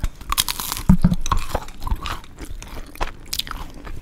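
A person biting into and chewing a crispy McDonald's Chicken McNugget close to the microphone. The crunching is loudest and densest in the first second and a half, then turns into sparser crunchy chewing.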